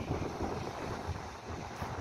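Wind buffeting the microphone, a fluttering low rumble, over the steady rush of surf on a rocky shore.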